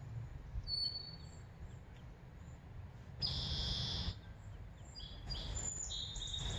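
Mallard ducklings peeping: thin high chirps, a brief one near the start, a louder run lasting about a second just past the middle, and more near the end, over a steady low outdoor rumble.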